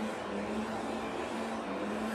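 Steady background noise with a constant low hum and no distinct events.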